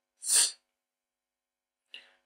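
A man's short breath, a quick hissy intake lasting about a third of a second, near the start.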